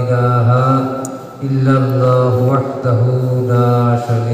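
A man's voice chanting the Arabic opening praise of an Islamic sermon, in long drawn-out held notes on a steady low pitch. Two long phrases with a short breath between them about a second in.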